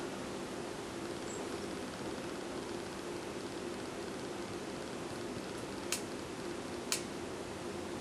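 Steady background hiss with a faint low hum: room tone. Two short clicks come about a second apart near the end.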